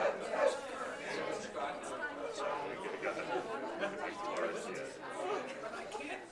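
Several people chatting at once, an indistinct murmur of overlapping voices.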